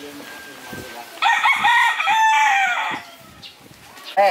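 A rooster crowing once: one loud call of nearly two seconds, starting a little over a second in, rising then falling away. Faint soft footsteps on a dirt path run underneath.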